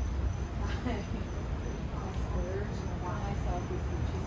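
Street ambience: a steady low rumble of traffic, faint voices of people talking nearby, and a continuous high insect trill, typical of crickets.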